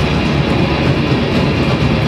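A metallic hardcore band playing loud live: heavily distorted electric guitars and drums in a dense, unbroken mass of sound.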